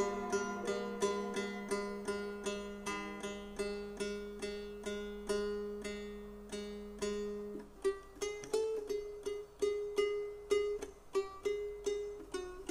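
Long-necked plucked lute playing a melody of single plucked notes, about two to three a second, over a low held drone that stops about eight seconds in.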